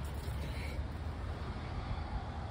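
Low, steady outdoor background rumble with no distinct event in it.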